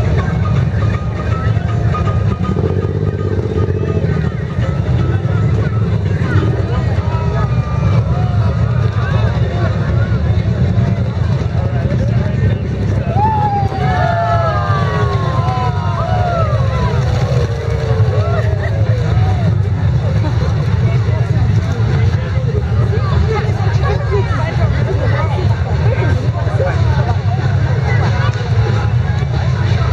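Parade street sound: a steady low rumble of passing vehicle engines, with crowd voices and calls over it that are busiest about halfway through.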